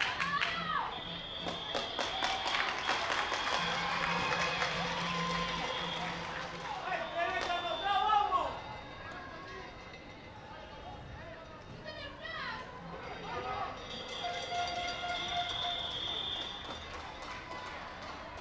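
Sports-field ambience: voices shouting now and then over music playing in the background, with a run of sharp taps in the first few seconds.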